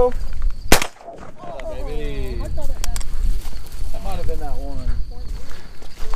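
A single 12-gauge shotgun blast about a second in, fired at a teal flying over the decoys.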